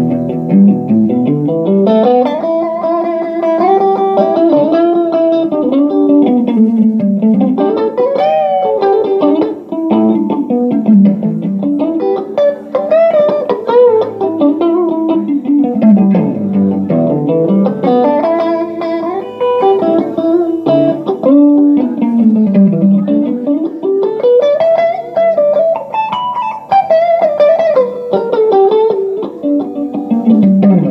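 Electric guitar played live: an instrumental lead of melodic runs that climb and fall in waves every few seconds.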